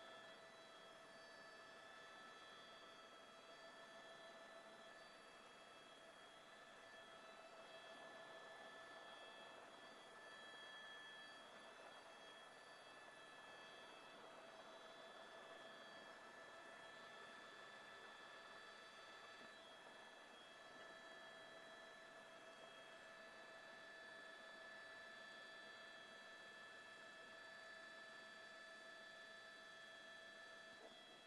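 Near silence: a faint steady hiss with a few thin, unchanging tones.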